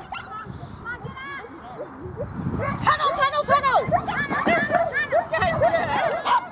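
Dogs barking and yelping in short, high calls, sparse at first, then overlapping and louder from about halfway through.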